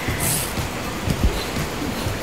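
Handling noise from the sandal and braided leather cord being moved on the work table: a steady hiss with irregular low thuds and a brief high rustle near the start.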